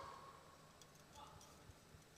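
Near silence: faint arena room tone, with a few very faint ticks.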